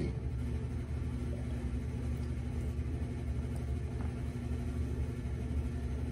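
A steady low rumble, a room hum with a faint tone above it and nothing else standing out.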